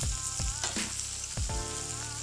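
Lobster tails and brown butter sizzling on a hot grill pan, with a few short knocks of metal tongs as the tails are lifted onto a plate.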